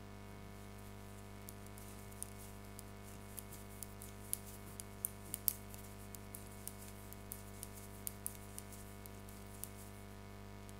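Metal-tipped knitting needles ticking and clicking lightly as cotton yarn is knitted stitch by stitch, a few small irregular ticks a second.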